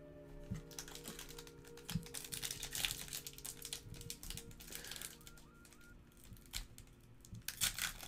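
Foil wrappers of 2019 Panini Prizm baseball card packs crinkling and rustling as they are handled and picked up, in bursts from about half a second to five seconds in and again near the end. Faint background music with steady held notes runs underneath.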